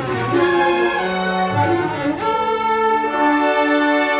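An orchestra playing held notes and chords that change every second or so.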